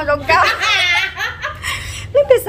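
A woman laughing, a high-pitched laugh in the first second, trailing off into softer voice sounds.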